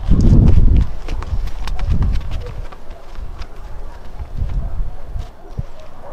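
Cats' paws thudding and pattering on a springy trampoline mat as they run and pounce, with a heavy low thump in the first second and further thuds about two seconds in and again later.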